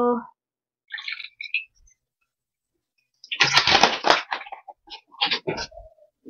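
A drink poured from a plastic bottle into a glass, a dense splashing stretch about halfway through, followed by several light knocks and taps as the bottle and glass are handled.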